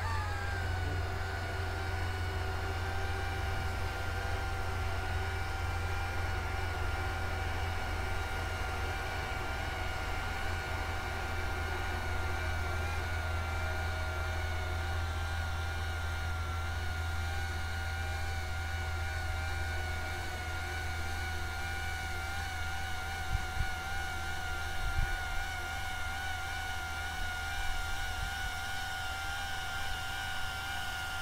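Coaxial copter's electric motors and counter-rotating propellers running in steady forward flight: a steady whine whose pitch wavers slightly, over a low hum. A few brief knocks come in the last third.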